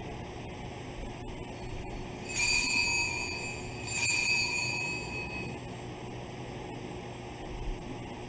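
Altar bell rung twice at the elevation of the host during the consecration, each strike a clear high ringing tone that fades over about a second and a half.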